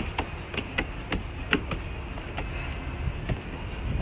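Footsteps on wooden stairs and decking, irregular knocks of several people walking up, over a steady low rumble.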